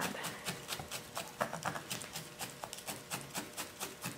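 Felting needle stabbing again and again into wool wrapped over a pig armature, a quick, even run of soft ticks about five a second.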